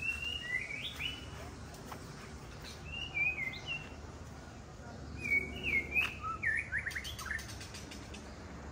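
A songbird singing in forest: three short whistled phrases of gliding notes, the first at the very start, the second about three seconds in, and the last and loudest a longer run ending in quick falling notes.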